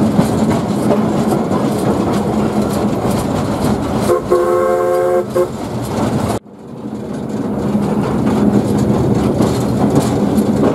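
Coal-fired 0-4-2 tank steam locomotive running, heard from its footplate. Its whistle sounds about four seconds in for just over a second. About six seconds in the sound suddenly drops away, then builds back up over the next couple of seconds.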